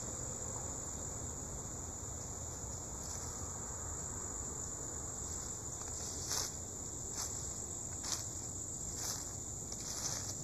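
Steady high-pitched chorus of insects, crickets or cicadas, in woodland. In the second half, four short crunches of footsteps in dry leaf litter stand out, about a second apart.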